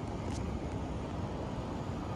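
Steady low rumbling outdoor noise of wind on the microphone and ocean surf, with a faint tick about a third of a second in.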